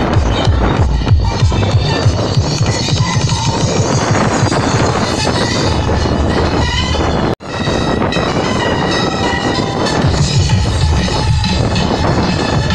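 Loud tekno played on a free-party sound system, with a fast, steady bass beat. The sound cuts out for an instant about seven seconds in.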